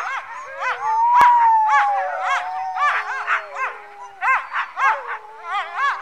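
Greenland sled dogs howling together: long, drawn-out howls that slide slowly in pitch, overlapped by short yelping calls repeated several times a second.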